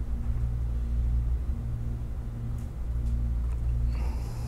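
A steady low hum and rumble in the room recording.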